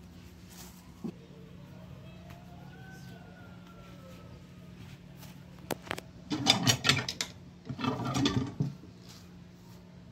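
Metal hand tortilla press being worked over a ball of masa: a couple of sharp clicks, then two loud creaking presses, each just under a second long and about half a second apart.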